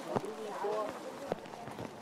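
Indistinct voices of people talking in the background, with a few sharp knocks.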